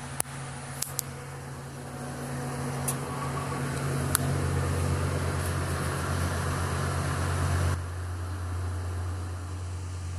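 Mobile crane's diesel engine running, heard inside the operator's cab: a steady low hum that builds from about two seconds in and drops back suddenly near the end, as it would under lifting load. A few light clicks come in the first seconds.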